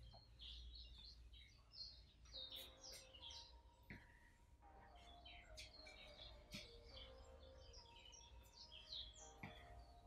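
Faint bird chirps over near silence: many short, high calls scattered all through, with a few soft knocks now and then.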